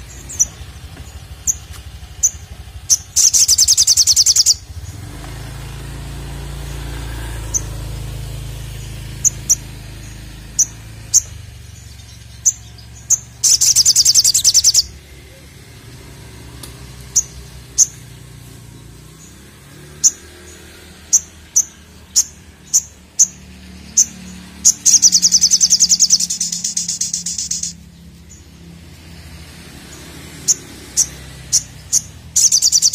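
Male olive-backed sunbird calling: single sharp, high chips at irregular intervals, broken three times by a loud, fast, high-pitched trill lasting about one and a half to three seconds, the last one the longest.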